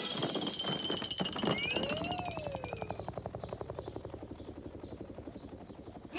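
Cartoon sound effects: a rapid, evenly pulsing rattle that fades away, with a few whistling pitch glides in the first half.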